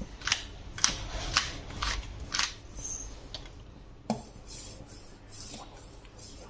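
Hand pepper mill grinding black peppercorns in short twisting strokes, about two a second for the first two and a half seconds, then a single light knock about four seconds in.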